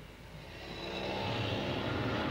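A steady engine-like roar that swells in loudness over about the first second, then holds.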